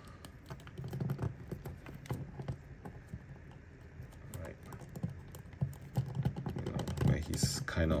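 Irregular small clicks and handling noise from a plastic action figure's joints as its legs and arms are bent into a pose by hand.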